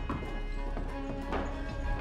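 Film score music with a deep low rumble beneath it and sustained tones, joined by a steady lower tone past the middle. Two short knocks, one at the start and one near the end, sound over it.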